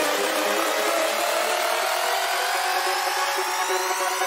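Psytrance build-up: the bass is cut out and a synth riser sweeps steadily upward in pitch over a hiss of noise, building toward the drop.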